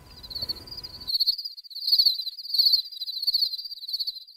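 A high-pitched, insect-like trilling chirp that swells and fades in waves about every 0.7 seconds. A faint low background hiss underneath cuts off about a second in.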